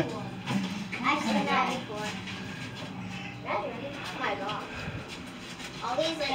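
Faint background voices of people talking, on and off, with no other distinct sound.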